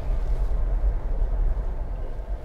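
Steady low rumble of a 2021 Jeep Wrangler 4xe driving, heard from inside its cabin: road and drivetrain noise.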